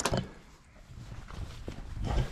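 Faint footsteps on grass as a person walks round a dinghy, with a sharp click at the very start.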